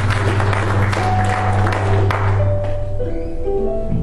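A live church praise band playing: a held bass note under drum and cymbal hits, which stops about three seconds in and gives way to soft, held keyboard notes.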